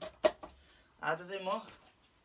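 Two sharp knocks in quick succession, the second louder, then a man's voice speaking briefly, a few muttered syllables about a second in.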